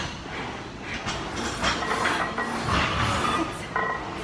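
Gym weight equipment knocking: a few light metal clinks, then a dull thump a little under three seconds in.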